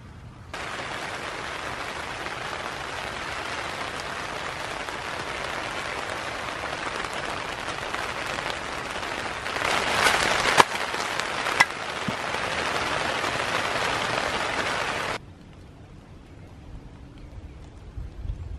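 Heavy rain falling in a steady hiss, with a louder stretch and a couple of sharp clicks around ten seconds in; the rain cuts off suddenly about fifteen seconds in.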